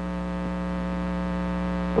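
Steady electrical mains hum in the audio system, a buzzy drone that grows slightly louder over the two seconds.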